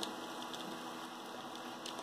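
Faint steady room noise in a small room, with a small click right at the start and nothing else distinct.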